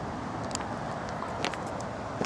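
Steady outdoor background noise of distant road traffic, with two faint clicks, about half a second and a second and a half in.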